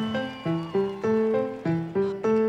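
A live band starts a song's instrumental intro on cue: a melody of single struck notes, about three a second, each sounding and then fading.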